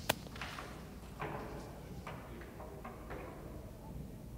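A horse cantering on arena sand: one sharp crack right at the start, then a string of lighter, irregular hoofbeats and knocks.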